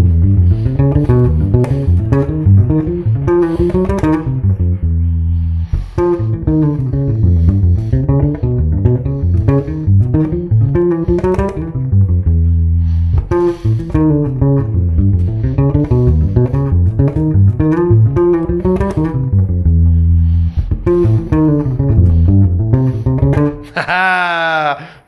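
Fender Precision bass played fingerstyle: a fast melodic lick at full tempo in C major, played over several times as phrases that run up and down the neck and come to rest on held low notes, then break off into new directions.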